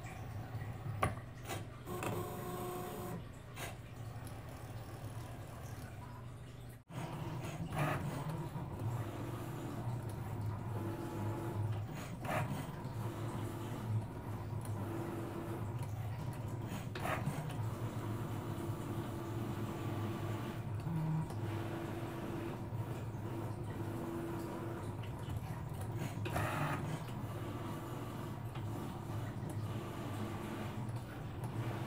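Cricut Maker 3 cutting machine running a cut in vinyl: its motors whir as the blade carriage moves back and forth and the rollers feed the mat, over a steady hum with occasional clicks. The sound breaks off briefly about seven seconds in.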